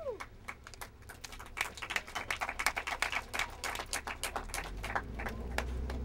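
A small group clapping: scattered, uneven claps that thicken a second or two in and thin out again. A low rumble comes in near the end.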